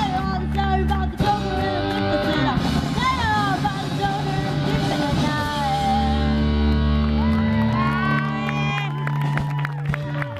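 Live rock band playing: electric guitar, bass guitar and drums with a singer, the band closing on long held notes that stop near the end.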